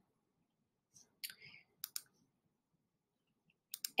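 Computer mouse clicking in short pairs, like double-clicks: once about two seconds in and again just before the end, with a faint soft sound shortly before the first pair.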